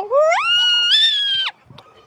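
A high-pitched squealing voice that slides up in pitch, holds high for about a second, and cuts off suddenly about a second and a half in.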